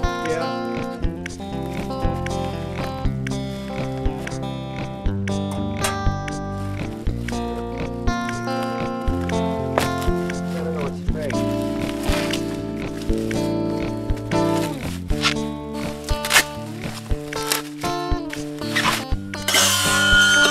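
Background music: held chords that change every second or two, with sharp percussive hits at a fairly regular pace.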